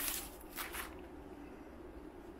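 Paper rustling as a vinyl LP slides out of its rice-paper inner sleeve, in two short rustles within the first second.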